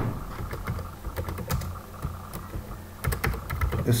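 Computer keyboard keys clicking as words are typed, in irregular runs of keystrokes with a quicker cluster near the end.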